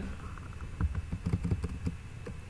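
Computer keyboard being typed on: a quick run of light key clicks, busiest in the second half.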